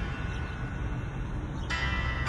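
Steady low outdoor rumble, with ringing, bell-like tones coming in near the end.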